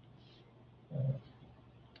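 Quiet room tone broken by one short, low vocal murmur, like a hesitation hum or grunt from the lecturer, about a second in.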